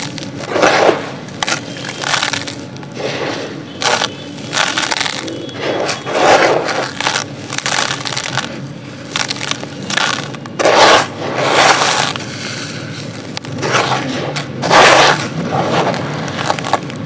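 Dry, grainy sand pieces crumbled by hand and poured onto a clay pot, giving irregular gritty crunching and pattering bursts. The loudest bursts come about a second in and again around six, eleven and fifteen seconds.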